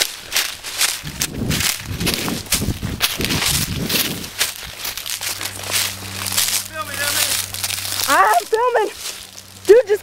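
Footsteps crunching and rustling through dry brush and leaf litter, a run of irregular crackly strokes. A child's high voice calls out briefly twice in the second half, over a faint steady low hum.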